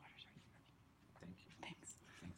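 Near silence in a lecture room, with faint whispered voices.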